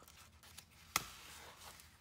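Handmade accordion-fold paper junk journal being unfolded on a tabletop: faint paper rustling, with one sharp click about a second in.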